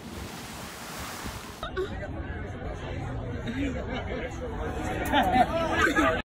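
A splash of water as someone drops in from a rock ledge, a hissing rush for about a second and a half, followed by people calling and shouting outdoors, louder near the end.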